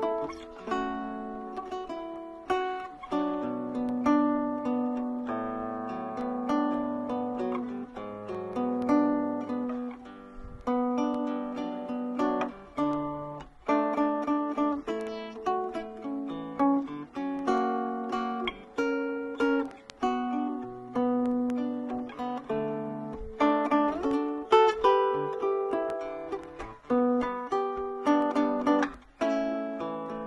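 Solo electro-acoustic guitar played fingerstyle: a melody picked out note by note over ringing arpeggiated chords, with a steady run of plucked attacks.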